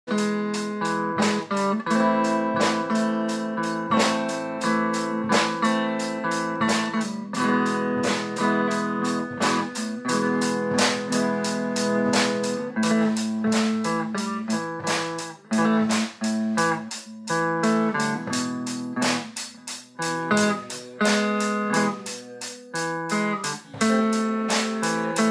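A small band jamming: guitar holding sustained chords over a drum kit keeping a steady beat on the cymbals.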